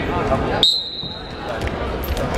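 Referee's whistle: one short, steady, high-pitched blast of just under a second, beginning about halfway in, signalling the start of the wrestling bout. Voices chatter before and after it.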